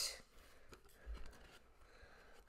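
Faint handling sounds of a cardboard album box being opened and turned: light rustles and a few soft knocks.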